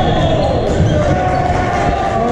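Indoor court sounds from a volleyball match on a hardwood gym floor: sneakers squeaking and players calling out, echoing through the large hall.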